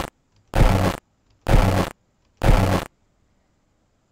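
A half-second snippet of harsh, hissing, distorted recorded sound from the InClip inverse-clipper microphone, played back four times in a row about a second apart, each time cut off abruptly.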